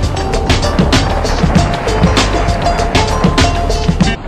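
Background music with drums and held melody notes.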